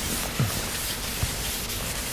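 A chalkboard being wiped by hand with a board wiper: a dry, scrubbing rub across the board, with two short soft thumps.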